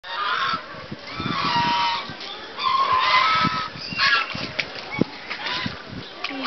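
A flock of white domestic waterfowl honking loudly and repeatedly: a few long calls in the first four seconds, then shorter ones.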